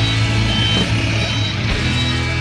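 Diesel dump truck engine running steadily while the truck is guided into position, with short high-pitched reversing beeps over it.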